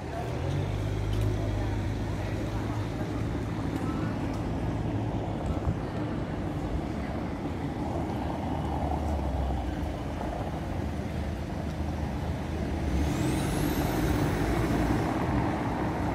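Street traffic: car engines running as cars drive slowly past on a cobbled street, a low steady hum under the noise of tyres and the street. About thirteen seconds in a thin high tone rises steeply.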